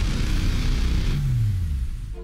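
Mercedes-Benz G-Class off-roader's engine running hard under a hiss, its note falling steadily in pitch in the second half.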